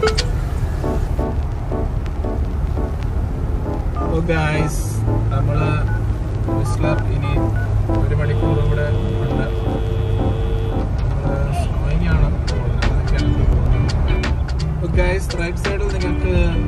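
Background music with a singing voice, over the low steady rumble of a car driving on a wet highway.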